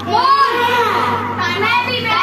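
Children's voices: one child's high voice rising and falling in long, drawn-out tones, with other children around.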